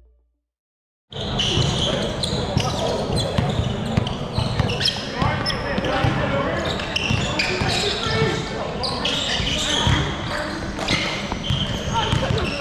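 Basketball game sound in a large gym: a basketball bouncing on the hardwood court amid players' voices, starting abruptly about a second in after a brief silence.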